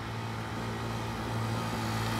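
Motorcycle engine running at a steady pitch as the bike approaches, growing gradually louder.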